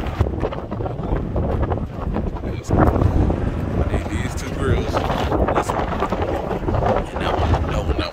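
Wind buffeting the phone's microphone, a steady low rumble.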